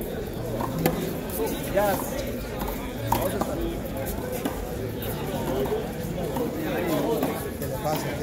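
Several sharp smacks of a small rubber handball being struck by hand and hitting the wall during a one-wall handball rally, spaced roughly a second apart.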